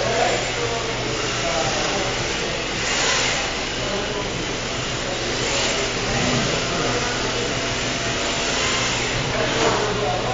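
Several rear-wheel-drive RC drift cars running together, their electric motors whining and rising and falling in pitch as they drift around the track. A steady low hum lies underneath, with hissy swells every few seconds.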